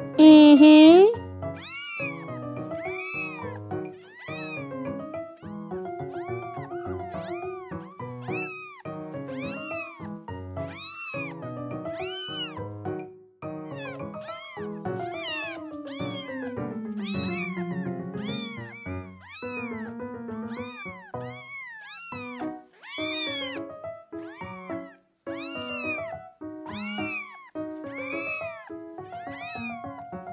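A steady stream of short, high kitten mews, more than one a second, over light background music. A louder, longer meow comes right at the start.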